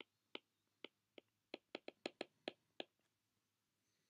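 Faint, light clicks of a stylus tip tapping a tablet screen while handwriting, about a dozen irregular taps over nearly three seconds, then stopping.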